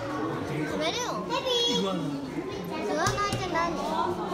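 Children's voices chattering and calling out over one another, with a few high-pitched excited shouts about a second in and again around three seconds.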